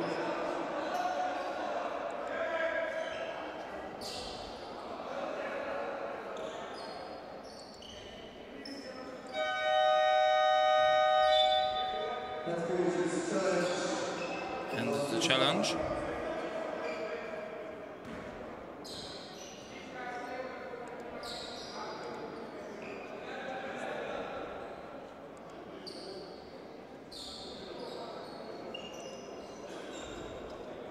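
Basketball arena horn sounding once, a steady buzzing tone of about two seconds, around a third of the way in. Around it come a basketball bouncing on the hardwood and the voices of players and officials echoing in the hall.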